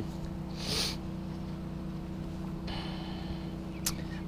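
A steady low hum with a short sniff just under a second in.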